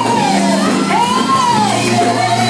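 Live gospel praise-and-worship music: a voice holds long notes that bend up and down in pitch over a steady band accompaniment, with shouting in the room.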